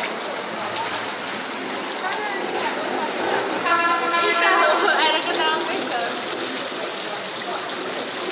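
A vehicle horn sounds once, a steady tone held for over a second in the middle. Underneath is a constant rushing noise of water from the flooded street, with people's voices now and then.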